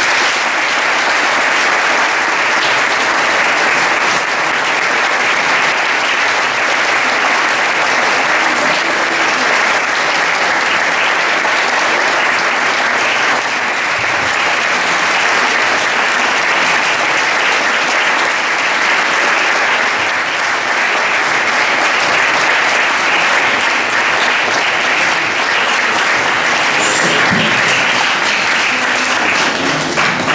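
Audience applauding: dense, steady clapping from a hall full of people.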